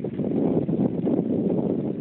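Wind buffeting the microphone: a loud, steady, dense rumble with no pitched sound in it.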